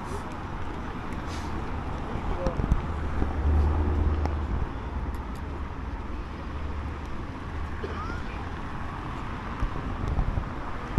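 Urban street ambience: steady city traffic noise with a low rumble that swells about three to four seconds in.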